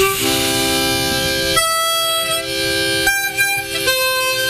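Two harmonicas played together in long held chords that change about three times. The playing is loose and unpolished.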